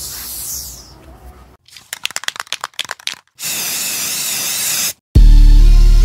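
Edited intro sound effects: a whoosh, then a run of crackling static clicks, then a steady hiss of static that cuts off suddenly. About five seconds in, a loud bass-heavy music hit starts and holds.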